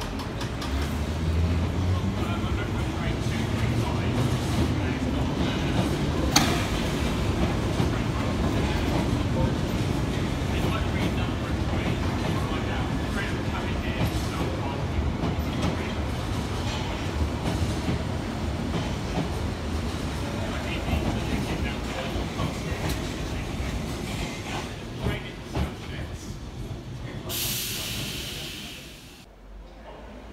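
A London Underground 1972 tube stock train pulling away from the platform. Its traction motors whine up in pitch as it accelerates over the first few seconds, then give way to a long rumble of wheels on rail that grows gradually quieter toward the end, with one sharp click about six seconds in.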